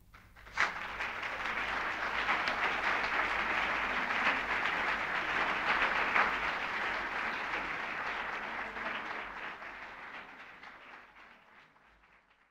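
Lecture audience applauding, a dense patter of many hands clapping that starts about half a second in, holds, then thins out and fades away near the end.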